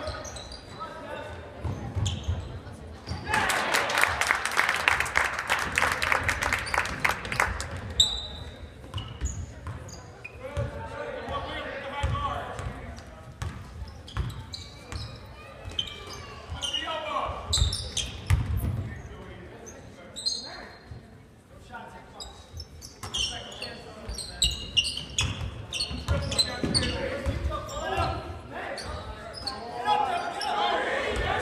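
Gymnasium sound of a basketball game: a basketball bouncing on the hardwood floor with low thuds, under scattered voices of spectators and players in a large echoing hall. About three seconds in comes a stretch of rapid sharp claps lasting some five seconds.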